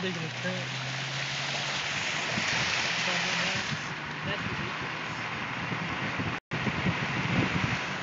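Steady hiss of rain and running floodwater, with a low engine hum under it for the first second and a half. The sound drops out briefly about six and a half seconds in.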